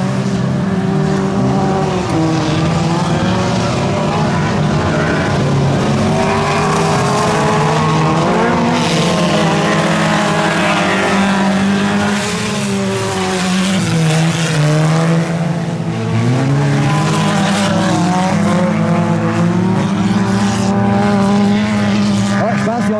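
Several four-cylinder junker cars racing on a muddy dirt track, their engines revving hard and rising and falling in pitch as they accelerate and back off.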